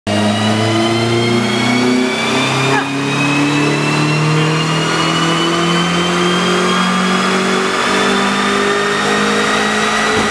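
Mazdaspeed Miata's turbocharged 1.8-litre four-cylinder run hard on a chassis dyno. Its revs climb steadily after a brief dip near three seconds in. A higher whine rises in pitch along with the engine.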